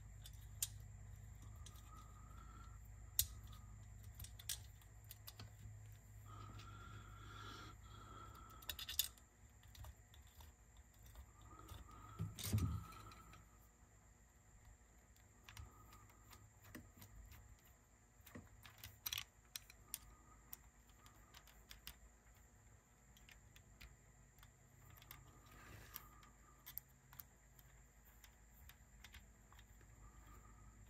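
Faint, scattered clicks and ticks of a small screwdriver and metal parts being handled as screws are taken out of a Revox B710 cassette deck's capstan motor assembly, with a louder knock about twelve seconds in.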